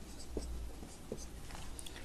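Felt-tip marker writing numbers on a board: faint strokes of the tip across the surface.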